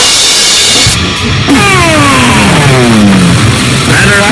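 Loud harsh noise music: a blast of static-like noise for about the first second, then a sound with several overtones sliding steadily down in pitch for about two seconds, over a continuous distorted low end.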